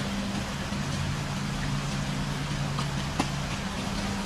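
Parked van's engine idling steadily with a low hum, under a steady hiss of rain.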